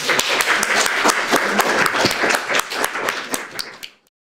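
Small audience applauding with many irregular hand claps, dying away near the end.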